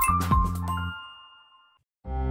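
End of a children's channel intro jingle: bright music with a chiming ding that fades out over about a second. A single high ringing note holds on briefly, then a moment of silence.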